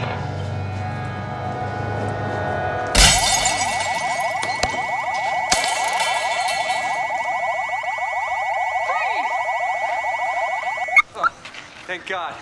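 A car window smashed, glass shattering about three seconds in, followed at once by a car alarm sounding a loud, fast warble over a steady high tone, with one more knock shortly after; the alarm cuts off suddenly near the end.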